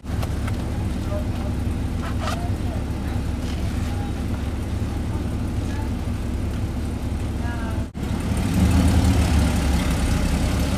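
Car engine idling steadily, heard from inside the cabin, with a brief dropout about eight seconds in.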